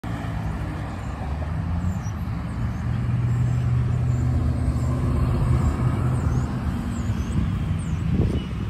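Street traffic: cars running on the road, a steady low engine hum.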